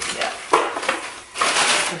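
Tissue paper and packing rustling and crinkling as it is pulled out of a cardboard box. It comes in uneven bursts, loudest about half a second in and again near the end.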